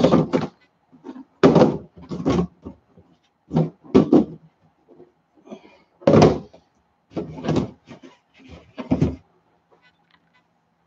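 White plastic reptile rack tubs being handled, knocked and slid against each other and the rack, a series of about eight short plastic knocks and scrapes that stop about nine seconds in.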